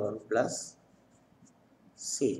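A voice speaks briefly, then the faint scratching of a marker pen writing on paper.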